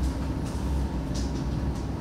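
Steady low hum and room noise from the courtroom's sound system, with no speech.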